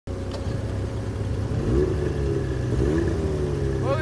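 Snowmobile engine running steadily, revving up twice, once near the middle and again about a second later, while breaking trail through deep snow.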